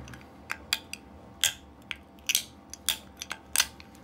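Pliers forcing a small part out of an opened hard disk drive's metal chassis instead of unscrewing it: a string of irregular sharp metallic clicks and snaps, about eight to ten in four seconds.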